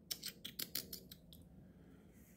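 A quick run of about eight faint, sharp ticks over a little more than a second, dying out about a second and a half in.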